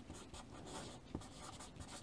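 Chalk writing on a chalkboard: faint scratching strokes, with one light tap a little after a second in.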